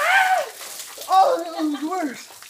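A man cries out loudly as a bucket of ice water splashes down over his head, then lets out more wordless cries at the cold.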